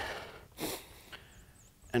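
A man's breathing between spoken phrases: a soft breathy trail-off, then one short, sharp intake of breath about half a second in.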